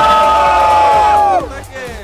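A crowd of young people shouting together in one long, loud held cheer, which breaks off about a second and a half in.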